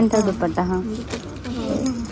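A woman says a word, then light jingling clinks and rustling as hands shift folded fabrics and plastic wrapping on a shop counter.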